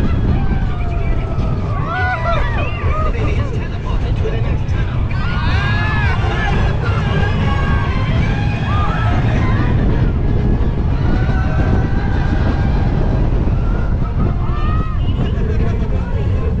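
Intamin steel roller coaster train running fast along its track, with a steady loud rumble of wheels and rushing air. Riders scream on and off over it, in long rising and falling cries several times.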